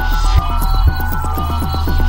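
Experimental electronic music: a steady deep bass drone under a rapid stream of short, falling-pitch synth blips and a pattern of short high synth notes.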